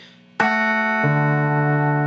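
Clean electric guitar: the G and high E strings plucked together at the second fret about half a second in, ringing on, then the open D string added under them about a second in, the three notes sustaining together.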